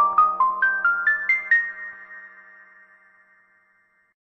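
Channel logo jingle: a quick rising run of short chiming notes, about five a second, the last and highest note about a second and a half in, then ringing out and fading away.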